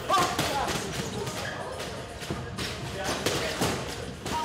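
Boxing gloves punching a leather heavy bag: a run of irregular thuds, with voices in the gym behind.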